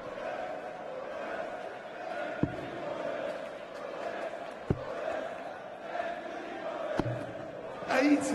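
Three darts thudding into a Unicorn bristle dartboard one at a time, a sharp click every two and a bit seconds, over a steady murmur from a large arena crowd.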